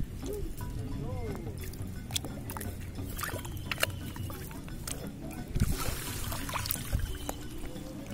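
Shallow water splashing and sloshing as a hand push net on a PVC pole is worked through it and bare feet wade, with several sharp splashes in the second half, over background music.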